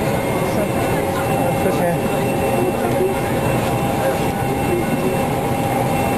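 Steady airliner cabin drone, a dense even rush with a couple of constant humming tones running under it, with indistinct voices murmuring over it.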